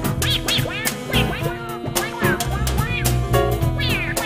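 Jazz band playing live: drum kit hits and electric bass under repeated short, high swooping squeals that rise and fall in pitch.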